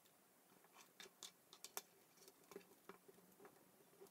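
Faint, irregular clicks and taps of plastic K'NEX rods and connectors being handled and snapped together as the front wheel assembly is fitted to the bike frame, with one sharper click a little before halfway.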